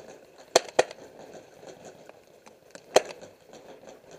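Paintball marker shots: two sharp pops about a quarter second apart about half a second in, then a single pop about three seconds in.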